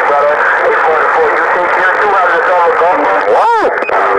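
A distant station's voice received over a President HR2510 radio on 27.025 MHz (CB channel 6), thin and noisy with the words unclear. Near the end a tone swoops up and back down.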